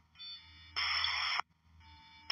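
Military UHF radio channel: a sharp-edged burst of static hiss lasting about two-thirds of a second, in the middle, as a transmission is keyed with no speech. Fainter hiss with a thin steady tone comes before and after it.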